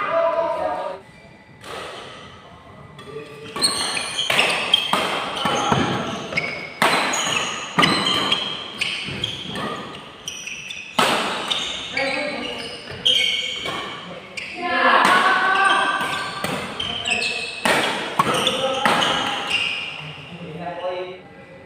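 Badminton rackets striking a shuttlecock during doubles rallies: a string of sharp hits echoing in a large hall, with players' voices in between.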